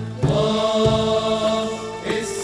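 Male vocal group singing: after a brief break just after the start, a chord is held steadily and chant-like through the rest.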